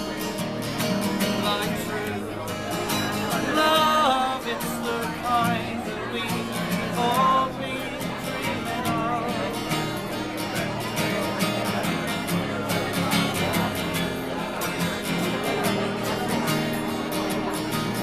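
Live acoustic guitar playing an Irish folk song, strummed and picked with a steady pulse.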